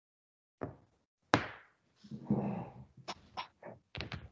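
Sharp knocks and thumps, the loudest a little over a second in. A short rougher sound follows, then a few quicker clicks near the end.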